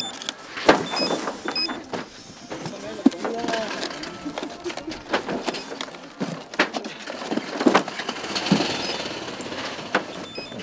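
Several short electronic beeps from a handheld barcode scanner logging pickers' tally cards, about a second in and again near the end, among sharp knocks of cardboard strawberry flats being handled and set down, with voices in the background.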